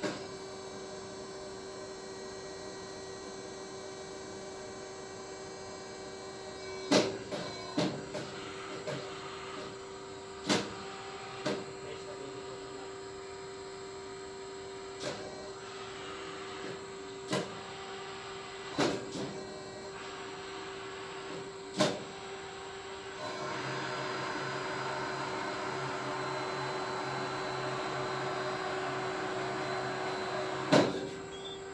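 Hydraulic hose crimping machine running with a steady hum, with scattered sharp knocks and clicks from the hose and fittings being handled. About two-thirds of the way in, a louder rushing noise starts and holds steady.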